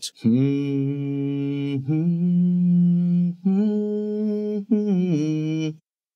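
A man humming a six-note lead line in C-sharp major, C-sharp, F, G-sharp, G-sharp, F, D-sharp (scale degrees 1, 3, 5, 5, 3, 2). Three long held notes step upward, then shorter notes step back down.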